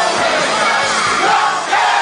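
Loud concert crowd shouting and singing along over a live rock band playing through the stadium PA.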